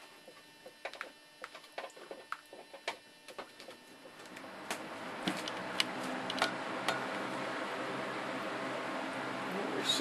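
Scattered light clicks and pops from the gas bubbles of a water electrolysis cell. About four seconds in, an electric fan starts up, and its steady whir and motor hum grow gradually louder.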